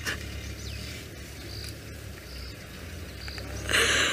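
A few short, high insect chirps about a second apart over a low, steady rumble, with a short hiss near the end.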